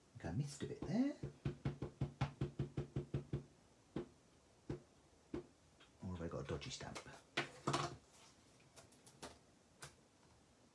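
An ink pad dabbed quickly and repeatedly onto a clear acrylic stamp to ink it, a run of about a dozen soft taps, followed by a few single clicks of the pad's plastic case, with a murmured voice at the start and again partway through.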